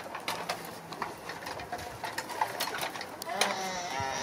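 Irregular light clicks and clanks of steel Tonka toy trucks being pushed, lifted and set down in loose dirt.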